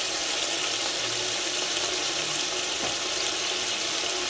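Steady sizzling hiss of onions and potatoes frying on the bottom of an Afghan kazan on the stove.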